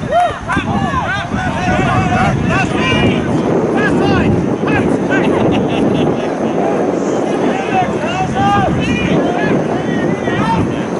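Several voices shouting calls across a rugby pitch during open play, with a steady rush of wind on the microphone underneath.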